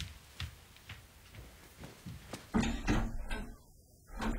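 A desk being searched: faint ticks and taps, then a louder run of clunks and rustling about two and a half seconds in as drawers and papers are handled.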